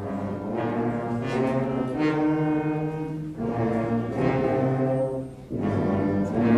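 School concert band playing sustained chords with brass and woodwinds together, in phrases: the sound dips briefly a little after three seconds and breaks off about five and a half seconds in before the next phrase begins.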